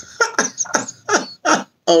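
A man laughing hard: a run of short bursts of laughter, about three a second.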